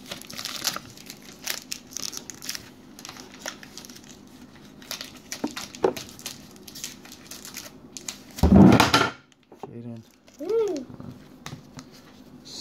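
Foil wrapper of a baseball card pack crinkling and tearing as it is peeled open, followed by softer rustling of the cards being handled. A short loud noise comes about two-thirds of the way in, and a brief voice-like sound rises and falls a moment later.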